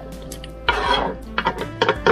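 A knife scraping chopped tomatoes off a cutting board into a stainless steel pot: a short scraping rush partway through, then a few light clicks and knocks of knife and board against the pot.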